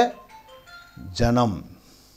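A faint electronic tune of short, clear, steady tones stepping from note to note, heard in the pause between a man's spoken words.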